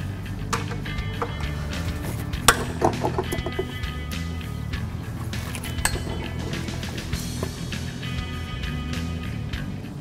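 Background music with a steady bass line, with a few sharp clicks over it, the loudest about two and a half seconds in.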